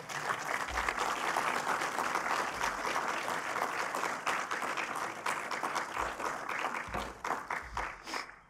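Audience applauding: dense clapping that thins to a few scattered claps near the end.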